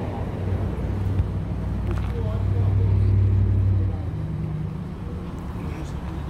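A motor vehicle engine running with a low rumble that swells louder about two seconds in and drops back down about four seconds in, with faint voices talking underneath.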